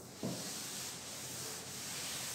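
A cloth rubbing across a chalkboard, wiping off chalk writing: a steady scrubbing rub that starts suddenly about a quarter of a second in.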